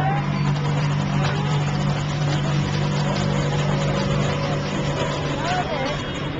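Busy street ambience: a steady, low engine drone runs throughout under a general noise of traffic and the street, with voices in the background.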